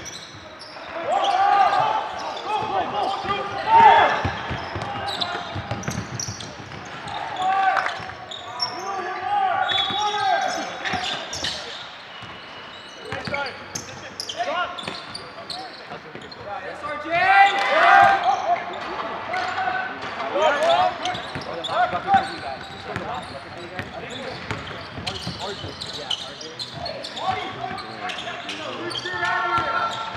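Basketball game in play on a hardwood gym court: the ball bouncing on the floor amid players' shouts and calls, in the echo of a large hall.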